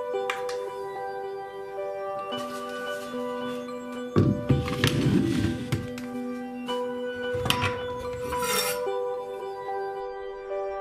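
Background music with soft, sustained melodic tones. Over it, a small metal object clicks and clinks on a wooden cutting board, with a louder rattling clatter lasting a couple of seconds in the middle. A short hissing swish comes near the end.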